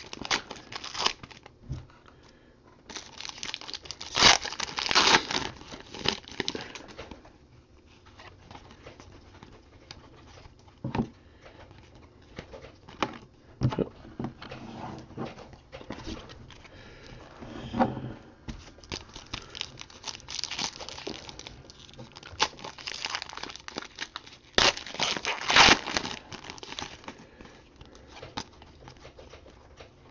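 Foil trading-card pack wrapper being torn open and crinkled, in irregular bursts, loudest a few seconds in and again past the middle. In between, the cards slide and flick against each other as they are sorted by hand, with short clicks.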